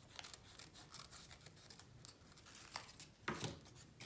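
Scissors snipping through folded painted paper: a series of faint cuts with light paper rustling, and a couple of louder clicks near the end.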